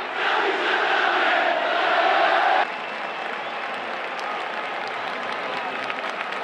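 Football stadium crowd chanting together, cutting off abruptly about two and a half seconds in to a quieter wash of crowd noise and applause.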